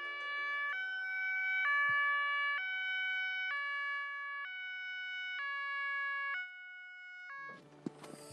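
Ambulance's two-tone siren alternating between a high and a low tone about once a second, getting louder over the first two seconds, quieter in the last second or so, then stopping.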